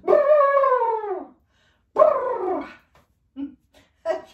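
A woman's wordless vocal call, long and sliding down in pitch, then a second shorter falling call about two seconds in.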